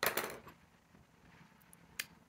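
A sharp clink with a short ring as a paintbrush is laid down on the table beside the other pens. Quiet handling follows, then a single light tick near the end.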